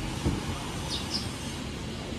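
Street ambience: a steady low rumble of traffic noise, with two short high chirps about a second in.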